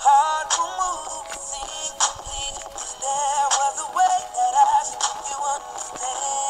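Recorded pop ballad playing: a sung vocal line with wavering runs over a regular drum beat. The sound is thin, with almost no bass.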